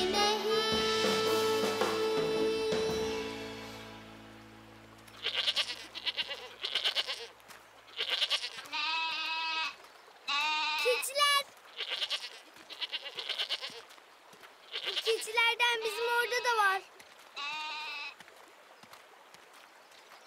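A children's song with sustained notes ends and fades out in the first few seconds. Then goats bleat again and again, a dozen or so short wavering calls, some overlapping.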